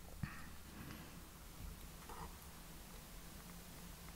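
Quiet room tone: a faint steady low hum, with one small click about a quarter second in and a few faint brief rustles.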